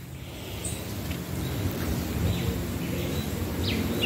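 Wind rumbling on the microphone, building steadily louder, with a few faint bird chirps over it.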